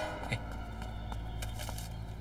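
A few faint, light footsteps on a tiled floor over a low, steady room hum.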